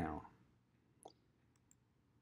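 Computer mouse clicking: one sharp click about a second in, then two fainter clicks in quick succession, at a low level.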